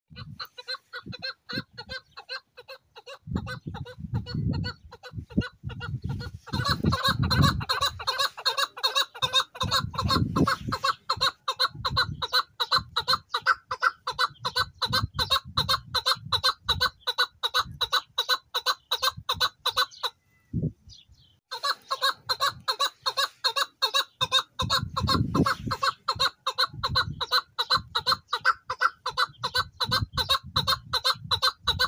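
Caged chukar partridge calling: a fast, even run of short repeated chuck notes. The calls are faint at first, grow loud after about six seconds, and break off briefly about two-thirds of the way through before resuming.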